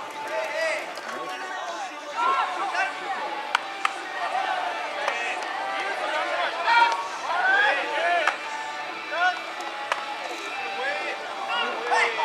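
Many voices calling and chattering, with sharp cracks every few seconds of a fungo bat hitting ground balls and balls smacking into gloves.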